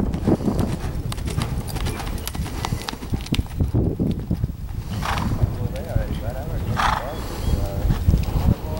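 Hoofbeats of a horse loping on soft arena dirt, a steady run of dull thuds, with two short breathy bursts about five and seven seconds in.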